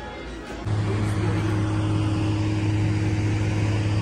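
A steady low hum starts suddenly under a second in and holds at an even level over a background of outdoor noise.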